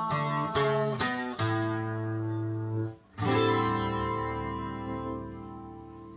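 Takamine twelve-string acoustic guitar playing the closing strummed chords of a song: a few quick strums, a held chord, a short stop, then one final chord struck and left to ring out and slowly fade.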